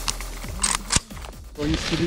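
A few sharp clicks and snaps from airsoft rifles during a reload drill, over electronic background music that stops about one and a half seconds in.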